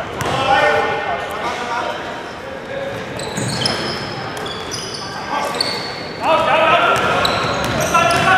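A basketball bouncing on a hardwood gym floor during play, with short high sneaker squeaks in the middle and players' shouts in a large, echoing hall.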